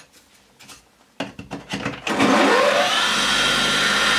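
A bench grinder switched on about two seconds in. Its motor whine rises as the stone wheel spins up to speed, then it runs steadily. A few light clicks of handling come before it.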